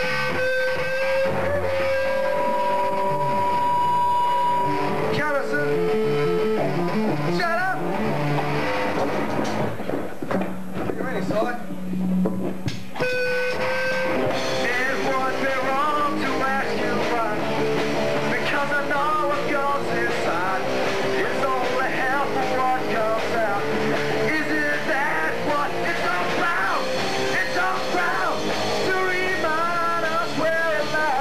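Live rock band playing a song on electric guitars and a drum kit, with a singer's voice coming in about halfway through.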